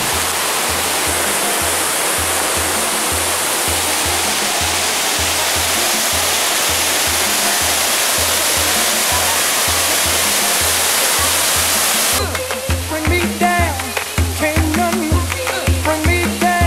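Waterfall: a steady rush of falling water over background music with a steady beat. About twelve seconds in, the water sound cuts off abruptly and the music with singing carries on alone.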